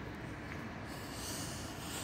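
Outdoor city background noise with wind rumbling on the microphone, and a soft breathy hiss in the second half.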